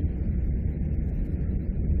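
Steady low rumble with a faint hiss: the room and recording background noise of a lecture, with no speech.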